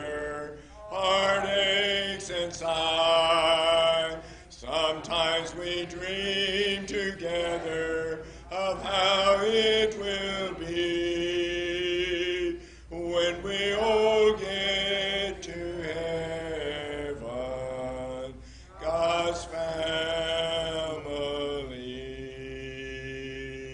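Unaccompanied hymn singing by church voices, a cappella, in long held phrases with short breaks between lines.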